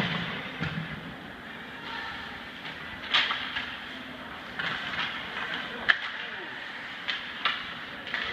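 Ice hockey play in an arena: a steady hiss of skates on the ice, broken by several sharp clacks of sticks and puck, the sharpest about six seconds in.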